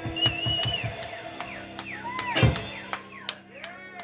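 Live band of electric guitars and drums playing, with sliding, bending high notes over held low notes and a heavy drum hit about two and a half seconds in. The playing thins out toward the end as the song winds down.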